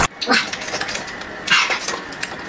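Close-miked eating sounds: chewing with the mouth closed, with two brief mouth noises about a third of a second and a second and a half in.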